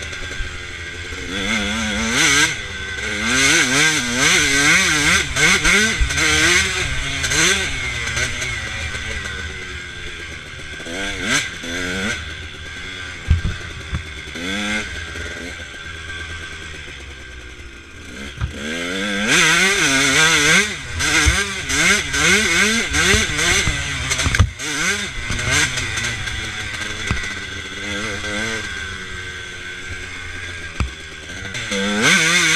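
Two-stroke KTM dirt bike engine, heard from a camera on the bike, revving up and down with the throttle as it rides a trail. The revs ease off for several seconds around the middle, then pick up again. A few sharp knocks come through, the loudest about thirteen seconds in.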